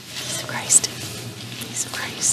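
Faint, distant voices of a few people exchanging the peace across a large room, with sharp 's' sounds standing out, over a low steady hum.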